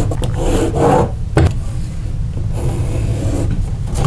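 Pencil scratching lines onto drywall along a straightedge, the rule rubbing and sliding against the board's paper face, with a knock about a second and a half in.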